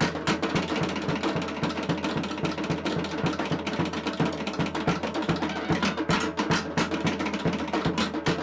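Tahitian drum music: a fast, steady roll of wooden slit-drum strikes over a regular bass-drum beat.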